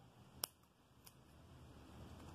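Scissors snipping through yarn while a pompom is trimmed: one sharp snip about half a second in and a fainter one about a second in.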